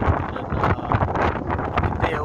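Wind buffeting the microphone in uneven gusts on an open ferry deck.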